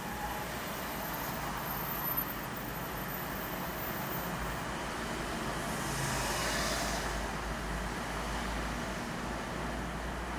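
Traffic noise from a car driving on city streets: steady road rumble that swells and fades again about six to seven seconds in, with a short click about two seconds in.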